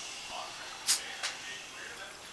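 A woman's soft whispered hush, brief 'shh'-like hisses about a second in, in a mostly quiet room, quieting a small dog after its bark.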